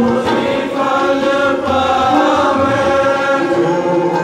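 Sikh kirtan: a male lead singer chanting a hymn with other voices joining in, the notes held long and sliding gently between pitches, with musical accompaniment underneath.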